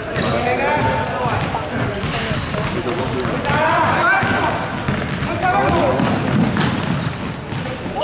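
Basketball being dribbled on a wooden court in a large sports hall, with many short, high-pitched sneaker squeaks on the floor as players run.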